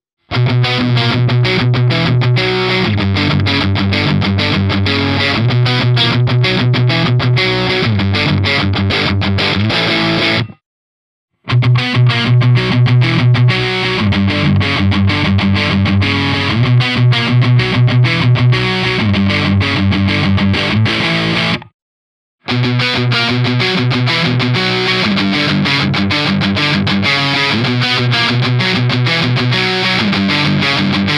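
Xotic Telecaster electric guitar played through the Mooer GE300's high-gain amp models: three loud, distorted riff passages of about ten seconds each, split by short silences. The second passage is on the Soldano SLO-100 model with a 4x12 cab, and the third is on the Peavey 5150 model.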